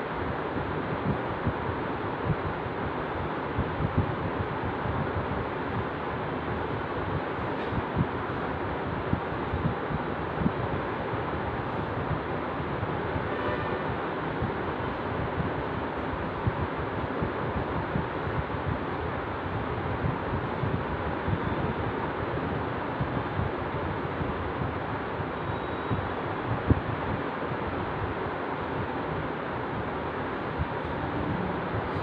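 Steady rushing background noise with light scattered crackles, like air buffeting a microphone. There is no speech.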